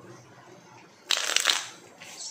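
A tarot deck being shuffled: one quick riffle of cards about a second in, lasting about half a second.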